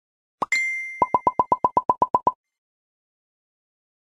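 Cartoon-style sound effects: a short pop, then a bright chime that rings on and fades, overlapped by a quick run of eleven short pops, about eight a second.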